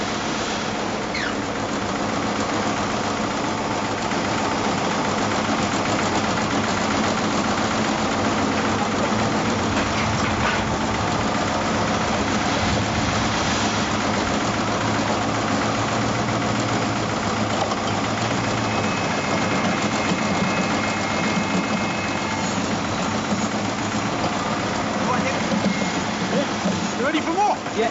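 Building-site machinery running: a steady engine drone throughout, with a few faint knocks.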